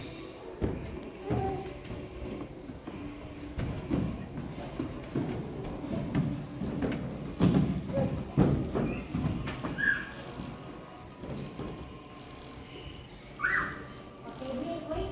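Irregular thumps and knocks of people climbing and moving through a padded indoor play structure, with music and indistinct voices in the background.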